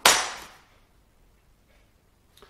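A steel plane blade set down on the wooden workbench: one sharp clack that dies away within about half a second.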